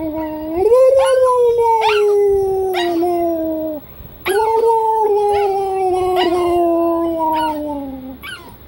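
Small dog whining in long, drawn-out howling calls, two of them: the first lifts in pitch about a second in, then both slide slowly downward. The second begins a little before halfway and trails off at the end.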